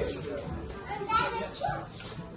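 A small child's high voice babbling, with other people's chatter around it.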